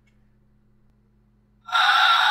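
Near silence with a faint steady hum, then about one and a half seconds in a loud, drawn-out gasp, breath sharply drawn in, starts suddenly.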